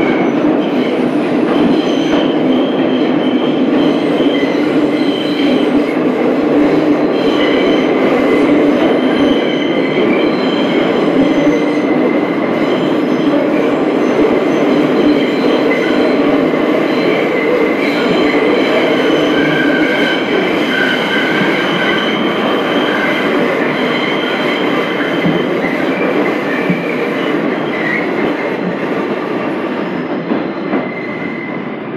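Bombardier R142 subway car running steadily through a tunnel, heard from inside the car: a loud, constant rumble of wheels on rail, with thin high wheel squeal coming and going above it.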